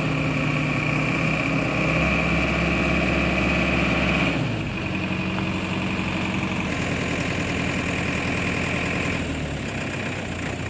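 Diesel engine of a 2017 Mahindra DI3200 cargo truck idling, a little louder for the first four seconds or so, then settling to a slightly quieter, steady idle. A steady high-pitched whine runs over the engine sound.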